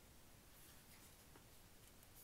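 Faint paper rustle of a photo book page being turned by hand, a few soft brushes against low room hiss.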